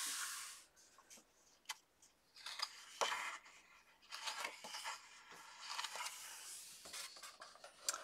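Faint paper handling on a coloring book: a short swish of a hand sliding over the cover near the start, then light rubbing, rustling and a couple of sharp taps as the book is opened.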